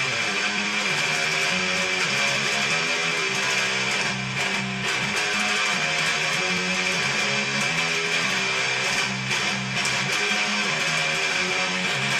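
Electric guitar playing a continuous down-picked riff, its chords changing about every half second to a second.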